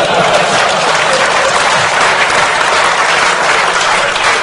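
A large audience applauding, steady and dense clapping.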